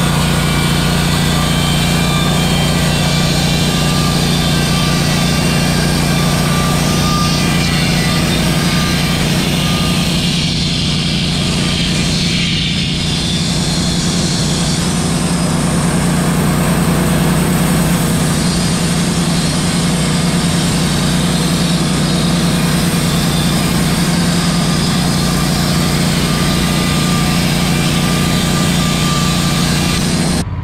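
Wood-Mizer portable bandsaw mill running under load, its engine droning steadily while the band blade saws lengthwise through a pine cant. This is a shallow first cut off the top of the cant, made to save one board from the slab.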